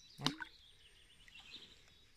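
Faint birdsong: small birds chirping high and thin over quiet outdoor background noise.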